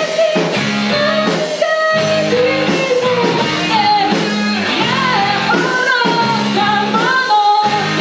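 A rock band playing live: a sung lead melody over electric guitars, bass and a drum kit.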